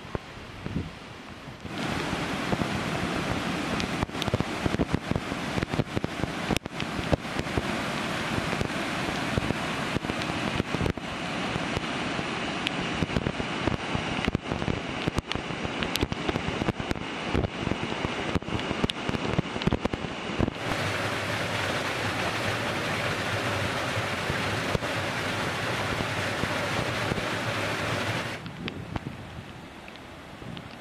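Muddy floodwater rushing over rocks: a steady rushing noise with frequent sharp crackles throughout. The sound changes abruptly about two seconds in and again about two-thirds of the way through, then drops lower near the end.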